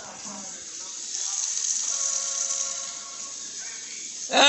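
A steady hiss that swells about a second in and eases off near the end, with a few faint steady tones underneath.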